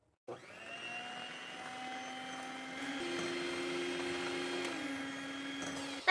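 Electric hand mixer running with its wire beaters in a bowl of thin cake batter: a steady motor whine that starts a moment in and gets a little louder about halfway.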